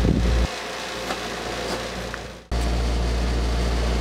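Benchtop thickness planer running with a steady motor hum. The noise falls back about half a second in, fades out, then comes back abruptly at full level about two and a half seconds in.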